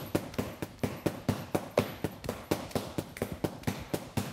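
Arnis stick striking a hanging bag in rapid abanico fan strikes: a steady run of sharp knocks, about five a second, with the pace pushed a little faster near the end of a one-minute speed drill.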